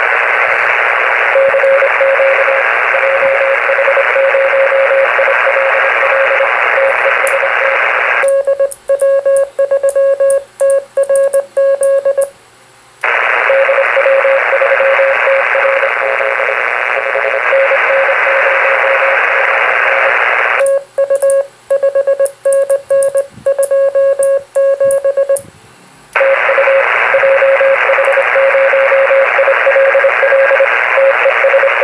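Morse code (CW) on the 40-metre band, heard through an HF transceiver's speaker: a keyed beep tone over loud band hiss. Twice the hiss cuts out for a few seconds and a cleaner keyed tone sends in quick dots and dashes before the hiss returns.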